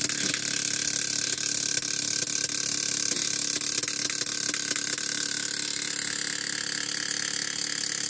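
A steady mechanical hum with a high hiss, holding the same few pitches without change.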